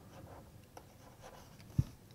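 Stylus writing on a tablet screen: faint scratching and small taps of the pen tip. A single short low thump near the end is the loudest sound.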